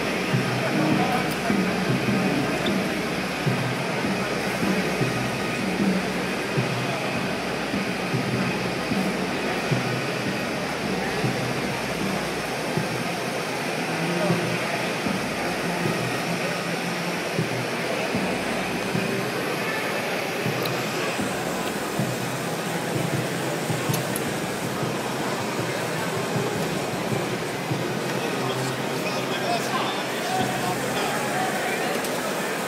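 Indistinct chatter of many voices and background music in a large hall, over the steady rush of a big glassworking torch flame.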